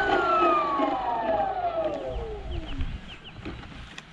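FLY WING Bell 206 scale RC helicopter's electric motor and rotors spinning down after landing: a whine that falls steadily in pitch and fades out about three seconds in.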